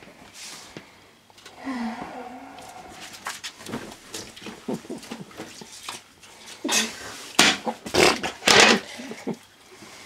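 A wet cat gives one low, wavering meow about two seconds in. Later a towel is rubbed and pushed over the wet tile floor in a run of short strokes.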